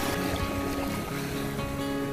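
Background music with held tones that change about a second in.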